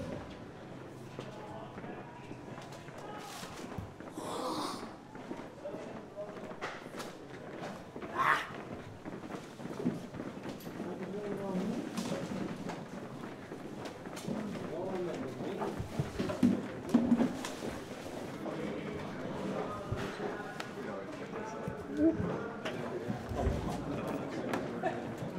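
Indistinct voices of a lacrosse team walking in gear down a corridor, with scattered footsteps and light clicks of equipment.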